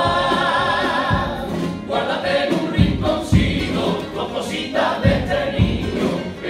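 Male carnival vocal group singing a pasodoble together in harmony, accompanied by guitars and a drum. A long held chord with vibrato opens, then the singing goes on with low drum strokes marking the beat.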